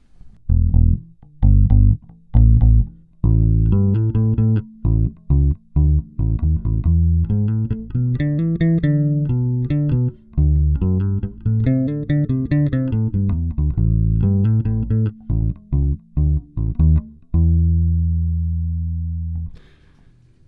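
A 2007 Squier Vintage Modified '70s Jazz Bass with flatwound strings, both pickups on and the tone all the way up, played clean and recorded direct with no effects. It plays a bass line of plucked notes that ends on one long note, which rings out and stops shortly before the end.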